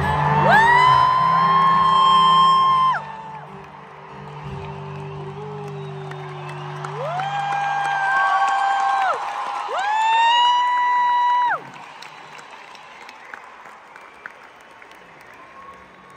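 Live stadium concert music winding down: the bass and backing fall away about seven seconds in while three long, high, held notes each swoop up into pitch. The last ends abruptly about twelve seconds in, leaving quieter crowd noise with scattered cheers.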